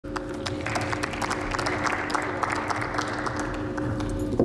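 Applause from many people clapping in a large chamber, thinning out near the end, with a steady hum underneath.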